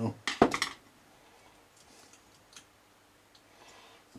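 A short clatter about half a second in, a small screwdriver being put down on the workbench, followed by a few faint clicks of the model locomotive's metal chassis being handled.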